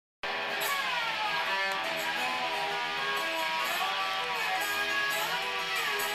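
Live guitar jam: strummed guitar under a held melody line that slides up and down in pitch.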